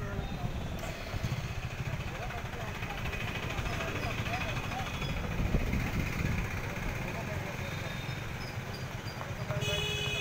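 Outdoor background of indistinct voices over a steady low rumble. A short, high horn-like tone sounds near the end.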